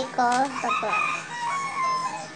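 A long, held animal call in the background, lasting over a second, after a short spoken word at the start.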